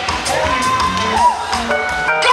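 Live gospel band music with a congregation cheering and shouting over it, and a voice gliding up and down in pitch through the middle.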